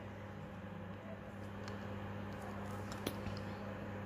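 Faint handling sounds of a small cosmetic jar and its cardboard box being opened: a few light clicks and rustles, the clearest about three seconds in, over a steady low hum.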